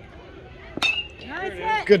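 A metal bat hits the ball about a second in: one sharp ping that rings briefly. Raised voices of people shouting encouragement follow.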